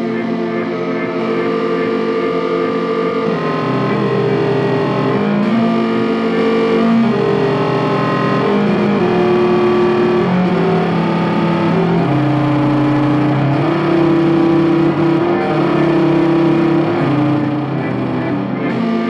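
Live electronic pop music: sustained synthesizer chords over a low line that steps to a new note every second or two, with no singing.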